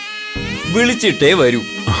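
Background score of a held, high-pitched synthesized tone with a short upward glide about half a second in, over which a voice is heard.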